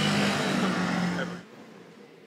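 Motor scooter engine running with a steady low note. It cuts off abruptly about one and a half seconds in, leaving only a faint hiss.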